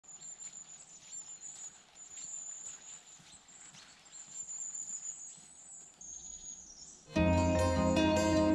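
Quiet forest ambience: a high, thin trilling call repeats in phrases of about two seconds over faint scattered pattering. About seven seconds in, loud music with plucked-string tones starts suddenly.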